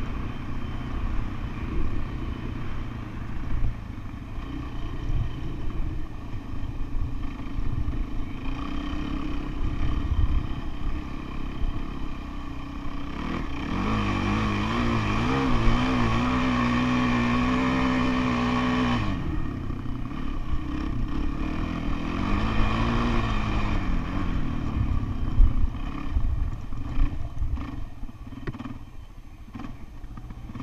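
Dirt bike engine running under load on rough sandy ground. About halfway through, the revs rise and hold high and steady for several seconds as the bike climbs a steep hill, then drop back suddenly. Another brief rise follows a few seconds later.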